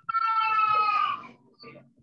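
A single drawn-out, high-pitched cry or call lasting just over a second, its pitch held nearly steady and sinking slightly as it fades.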